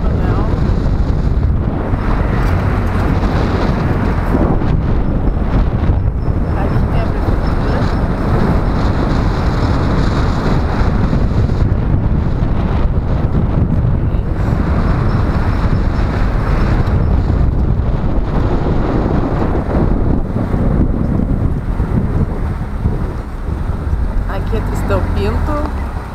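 Steady wind rumble on the microphone of a camera mounted on a moving car, mixed with the car's road and engine noise.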